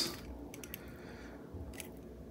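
Quiet room tone with a few faint ticks and crackles as solder melts onto the tip of a hot soldering iron, its flux smoking.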